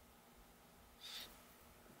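Near silence: room tone, with one brief faint high hiss about a second in.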